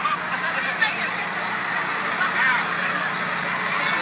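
Crowd chatter: many voices talking at once in a steady murmur outdoors, with only faint snatches of individual speech and no single voice to the fore.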